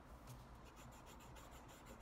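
Faint, quick scratching strokes of a yellow coloured pencil on paper while colouring in a drawing.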